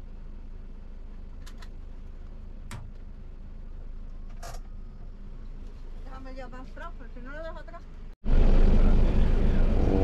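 Tour minibus engine running at low speed, heard as a steady low hum inside the cabin, with a few light clicks and faint voices. Just past eight seconds the sound cuts off abruptly and gives way to loud, close speech.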